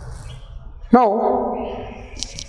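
A man's voice saying one drawn-out "now" about a second in, over a low room hum.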